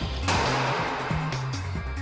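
A 400-pound drop-test weight crashes onto a steel test sample: a sudden noisy crash about a quarter second in that dies away over about a second, over steady background music.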